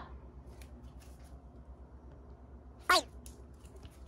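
Small Maltese dog nosing and pawing at the edge of a door to push it open: faint scratching and rustling. One short squeak falls sharply in pitch about three seconds in.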